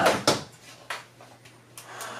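A few light clicks and knocks of plastic Nerf Rival blasters being handled and shifted in the hands.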